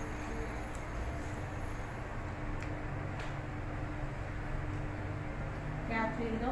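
Steady low background rumble with a faint hum, and a few faint, scattered clicks.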